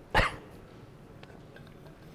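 A single short, sharp bark near the start, over quiet room tone.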